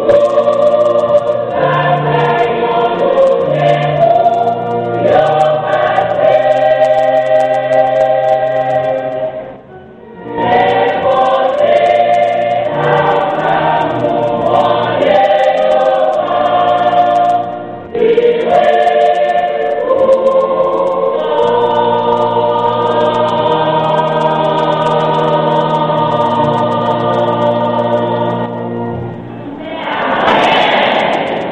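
Church choir singing together, with held chords in several voice parts, in long phrases broken by short pauses about ten and eighteen seconds in.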